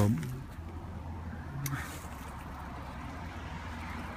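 Steady low background rumble, with the end of a spoken word at the start and a brief murmur about a second and a half in.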